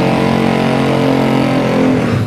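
A race-built Yamaha X-Max scooter engine running at a steady, unchanging note through its aftermarket exhaust.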